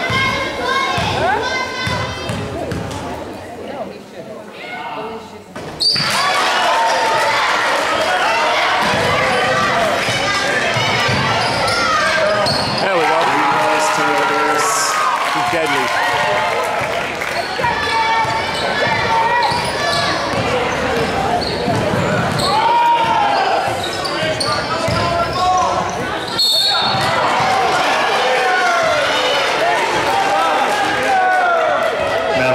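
Basketball bouncing on a hardwood gym floor amid indistinct shouting voices from players and spectators, echoing in a large gym. The sound gets suddenly louder about six seconds in.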